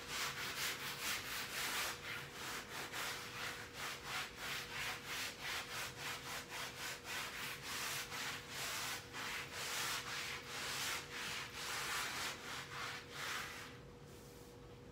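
Scrubbing a wall by hand: quick, rhythmic back-and-forth scratchy strokes that stop near the end, over a faint steady hum.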